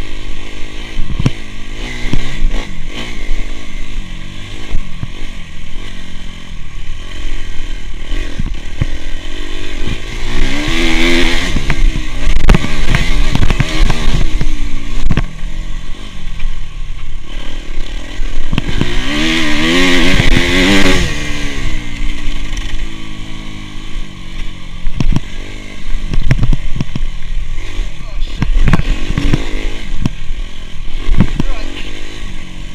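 Dirt bike engine under way, revving up and dropping back as the rider works the throttle, with two strong revs a little over a third of the way in and about two-thirds through. Heard from a chest-mounted camera, with short knocks scattered through.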